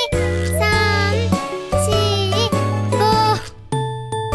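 Children's song music with bright chiming notes over a steady bass, with a child's voice counting numbers in a drawn-out, sung way over it.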